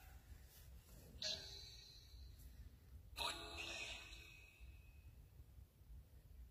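Near silence broken by two faint, brief voice-like sounds, one about a second in and a longer one about three seconds in.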